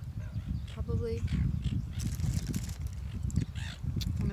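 Wind buffeting the camera's microphone: an uneven low rumble.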